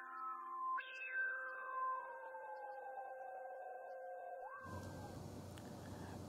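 Quiet electronic synthesizer outro sting: a few sustained tones held together, one sliding slowly down in pitch, ending about five seconds in, then a faint steady hiss.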